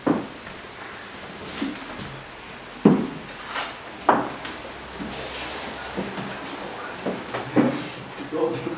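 Wooden picture frames being handled, knocking against one another: a handful of sharp knocks, the loudest about three seconds in.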